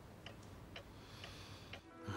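A clock ticking faintly and steadily, about two ticks a second.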